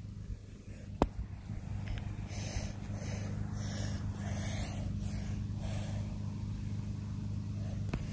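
Lawnmower engine running steadily, growing louder over the first few seconds and then holding at an even pitch.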